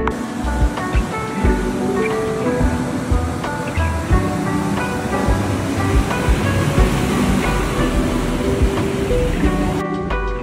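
Background music with a steady beat, laid over the continuous wash of ocean surf breaking on a sandy beach.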